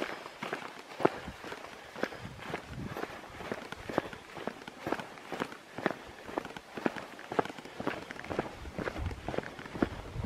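Footsteps on bare granite ledge: a walker's steady pace of crisp scuffing steps, about two a second.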